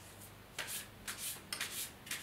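A deck of oracle cards being shuffled by hand: a series of short papery rubbing strokes, about two a second.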